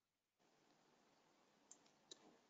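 Near silence, with two faint clicks near the end from a computer mouse.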